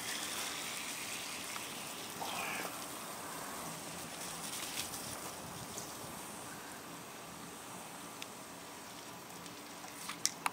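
Water running from a garden hose and splashing onto grass, a steady hiss that slowly grows fainter.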